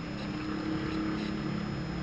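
A person sniffing a perfume bottle held at the nose: one long, steady breath in through the nose.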